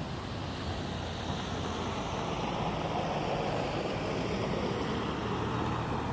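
Steady road traffic noise: a low engine hum with tyre noise that swells a little in the middle and eases off.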